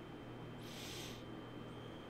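Low, steady room hum with one brief soft hiss, about half a second long, a little under a second in.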